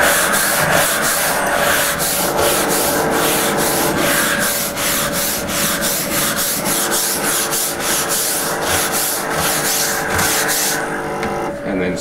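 A steam cleaner's floor-head brush scrubbing back and forth on a wet hard floor, about three strokes a second, over the machine's steady hum. The scrubbing stops near the end.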